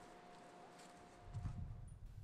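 Near silence with a faint steady high tone, then a few soft low knocks about halfway through.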